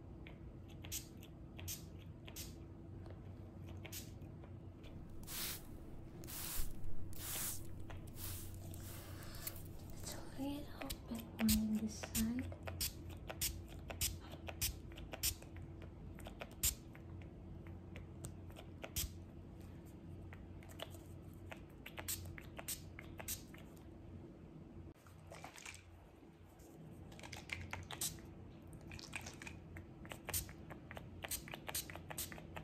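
Close-mic ASMR haircut tool sounds: an irregular run of sharp snips and clicks from hairdressing tools worked right at the microphone, thickest in the first half, over a low steady hum.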